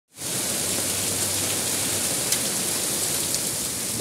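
Heavy rain mixed with hail pouring down in a steady hiss, with two sharp ticks in the second half.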